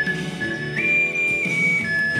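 Soprano ocarina playing a slow melody in pure, steady notes over a chordal accompaniment: a long note, a leap up to a higher note held for about half a second, then stepping back down near the end.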